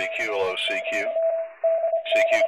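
Ham radio audio: voices heard over a radio receiver, with a steady Morse code tone keyed on and off throughout. A short burst of static hiss comes a little past the middle, and the voices return near the end.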